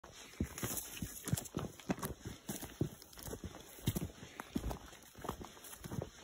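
Footsteps of a person walking in boots over dry, rocky dirt and leaf litter, at a steady pace of about two to three steps a second.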